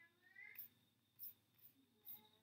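Near silence: room tone, with one faint, short rising whine about half a second in.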